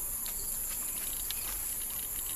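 Steady high-pitched chorus of insects, crickets or cicadas, with a few faint scattered ticks.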